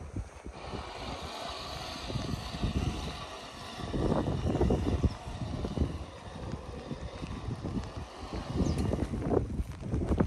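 Wind buffeting the microphone in irregular gusts, loudest around the middle and again near the end, over a faint steady hiss.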